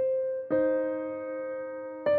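Slow solo piano background music: a note struck at the start and another, lower pair of notes about half a second in, each left to ring and fade.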